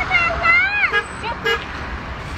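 Voices calling out with pitch rising and falling, then two short horn toots about half a second apart.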